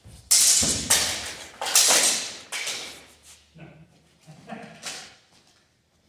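Longswords clashing in a fast sparring exchange: four loud, sharp hits in quick succession, with echo in the gym. A short voice-like exclamation follows, then one more sharp hit near the end.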